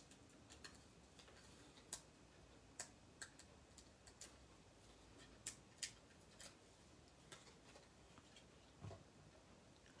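Faint, irregular small clicks and ticks of paper crafting: fingers peeling the backing paper off foam adhesive dimensionals and pressing the die-cut paper piece down onto the box.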